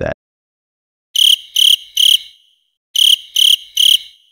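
Cricket chirping sound effect marking an awkward silence: two sets of three short, high chirps, the first starting about a second in and the second near the end.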